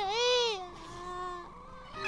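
A high-pitched wailing voice: one loud cry that rises and falls in the first half-second or so, then trails into a softer held tone, over a background music bed.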